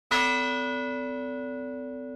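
A single bell-like chime from a logo intro sting, struck once just after the start and ringing on as it slowly fades.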